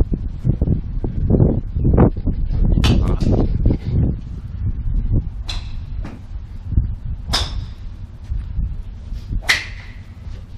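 Golf clubs striking balls at a driving range: about four sharp cracks a couple of seconds apart. A low, uneven rumble runs under the first half and fades.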